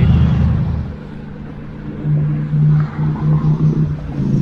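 Wind buffeting the microphone while riding an electric unicycle along a paved path. There is a low rumble that eases about a second in, then a steady low hum that comes back about two seconds in and stutters on and off near the end.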